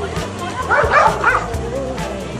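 A Shiba Inu giving a short burst of high yelping, whining cries about halfway through, over steady background music.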